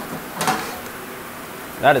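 A short clatter about half a second in as a kitchen drawer of pots and lids is pulled open and rummaged, over a steady sizzle of beef searing in an overheated, smoking pot.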